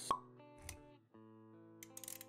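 Sound effects and music of an animated logo intro: a short pop just after the start and a soft low hit about two-thirds of a second in, over music of held notes that breaks off briefly around one second in and comes back. A few quick clicks near the end.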